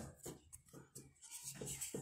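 Faint rubbing and handling noises from fingers gripping and turning a small plastic squeeze bottle, in short scattered scrapes.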